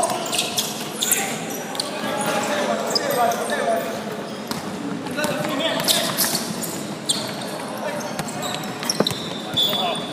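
Basketball game on an indoor wooden court: a ball bouncing, players running and calling out, echoing in a large hall. There is a single sharp knock about nine seconds in.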